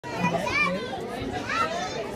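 Young children's voices chattering and calling out over one another.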